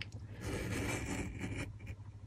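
Craft knife blade drawn through kraft card along a steel ruler: a soft scraping that lasts just over a second.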